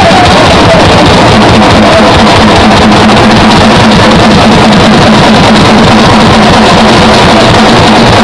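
Live rock band playing at full volume, recorded on a camera microphone that is overloaded, so the sound is harsh and distorted, with a low held note running under it.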